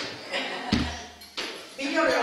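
Speech from a stage performance in a room, with a dull low thump a little under a second in.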